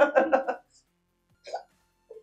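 A person laughing in quick, short bursts that stop about half a second in, followed by one brief vocal sound about a second and a half in.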